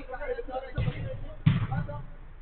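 Two dull thuds of a football being struck on an artificial-turf pitch, about a second in and again half a second later, the second the louder, with players' voices calling faintly.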